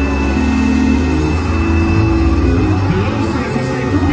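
Live gospel praise music: held keyboard chords over a steady low bass, with voices from the choir mixed in.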